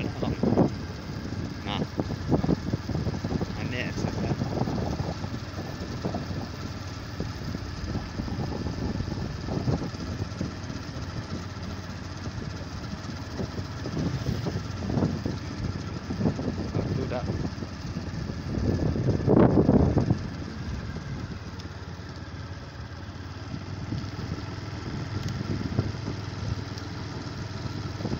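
Motor scooter engine and road noise while riding along at steady speed, mixed with rushing air on the microphone. There is a louder surge about two-thirds of the way through.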